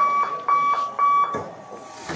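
Electronic beeper sounding a steady high tone in short regular beeps, about two a second, three beeps that stop about a second and a half in.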